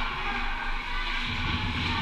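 Ice rink ambience during a hockey game: a steady hiss of skates scraping the ice over the arena's low background hum.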